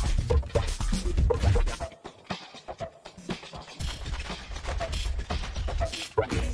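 Electronic loops playing back from the XTYLES loop library: layered drum and percussion hits over a deep bass. The bass drops out for nearly two seconds in the middle, leaving only sparse hits, then comes back in.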